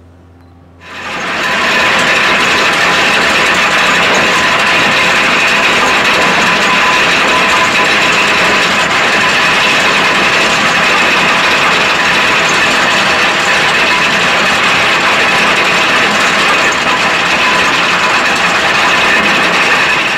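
A ship's anchor chain paying out through the windlass, a loud, continuous metallic rattle that starts suddenly about a second in and cuts off near the end.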